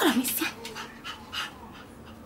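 Shih Tzus panting and whimpering, quieter than a brief high-pitched spoken call at the very start.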